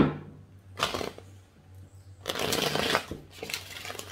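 A deck of tarot cards being shuffled by hand: a sharp knock at the start, a short rustle of cards a little under a second in, then a longer ruffle of cards a little past the middle.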